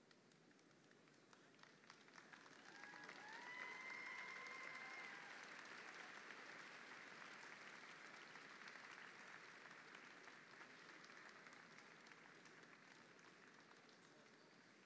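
Faint applause from a large arena audience, swelling about two seconds in, peaking around four seconds and slowly dying away, with a single cheer ringing out over it near its peak.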